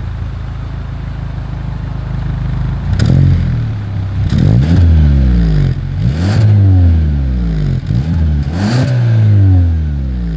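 2023 Hyundai Sonata N-Line's turbocharged 2.5-litre four-cylinder heard at the quad exhaust tips: idling steadily for about three seconds, then revved four times, each rev rising and falling in pitch.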